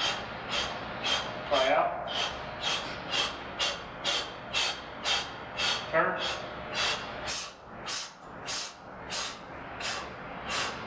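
Rapid, forceful breathing, about two breaths a second, from a man straining through a high-intensity set on a leg press machine, with a short voiced groan twice.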